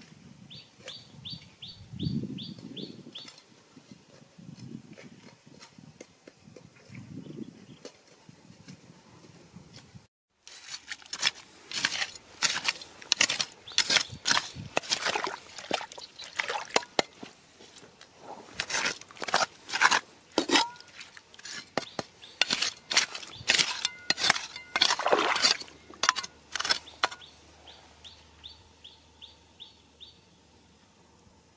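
Dense sharp clicks, knocks and splashes of rocks and shells being handled in shallow river water, starting after a brief cut about a third of the way in. Before that, low rumbles and a quick series of high chirps are heard.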